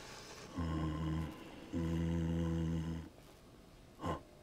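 Two low, wordless male grunts, a shorter one about half a second in and a longer one about two seconds in: two zombies' grunted attempt at conversation.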